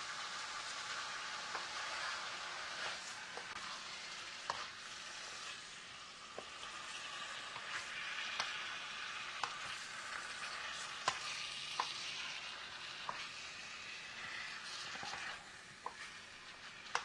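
Chicken pieces, broccoli and yellow pepper sizzling steadily in a pan as they cook, with scattered light clicks while a utensil stirs them.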